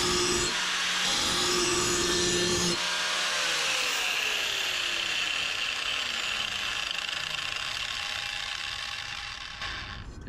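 Electric angle grinder's abrasive disc grinding the steel edge of a Honda lawn mower blade, then switched off about three seconds in, its motor whine falling steadily in pitch as the disc spins down.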